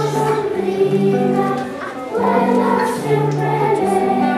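Children's choir singing a song over an accompaniment of steady, held low notes that change every second or so.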